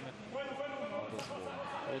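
A man speaking: sports commentary over a fight broadcast.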